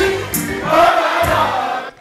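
Live afro-pop/dancehall music with singing into a microphone. The sound cuts off abruptly just before the end.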